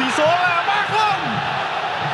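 A football TV commentator shouting excitedly at a goal, in long, drawn-out calls that rise and fall in pitch, over the steady noise of the stadium crowd.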